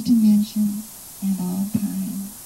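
A woman's voice intoning words through a microphone at a nearly level pitch, in two short phrases with a brief click near the end.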